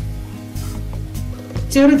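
Medu vada (urad dal fritters) sizzling as they deep-fry in hot oil, with a click at the start as the wire skimmer touches the pan.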